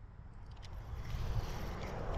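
Low rumble of handling noise on the camera microphone, growing louder, with a few faint clicks, as a spinning rod is swept up to set the hook on a bite.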